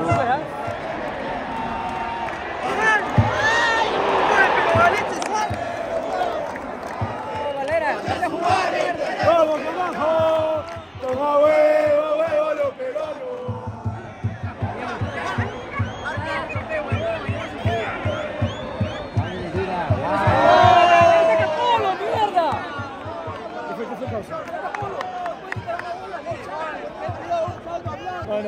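Football stadium crowd chanting and shouting, many voices at once, swelling louder about three seconds in and again about twenty seconds in.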